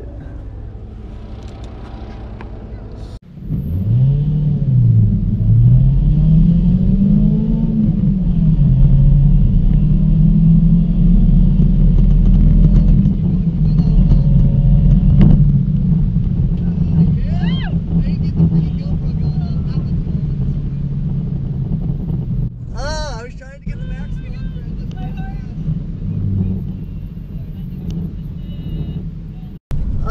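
Supercharged car engine heard from inside the cabin on a full-throttle drag-strip pass: the revs climb hard, dip about five seconds in, climb again to a peak, drop at a gear change and then run at a fairly steady pitch before easing off near the end.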